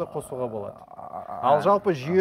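A man's voice without clear words, its pitch bending up and down near the end.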